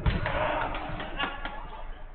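A football thuds once at the start, followed by players shouting to each other during a five-a-side game, with a couple of lighter knocks about a second in.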